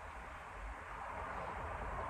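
Faint steady background hiss with a low rumble, with no distinct sound standing out.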